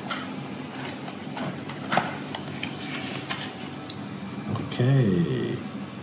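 Paperboard takeaway meal box being handled and its lid opened: light rustling with a few sharp taps and clicks, the clearest about two seconds in. A short murmur of voice comes about five seconds in.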